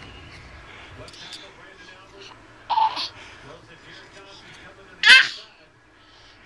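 Baby's excited vocalizing: a short breathy burst about three seconds in, then a loud, high-pitched squeal about five seconds in.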